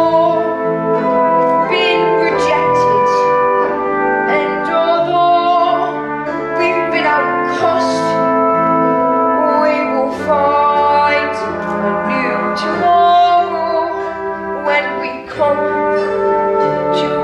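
Stage-musical orchestra playing an instrumental dance passage led by brass, with sustained chords and scattered sharp percussive accents.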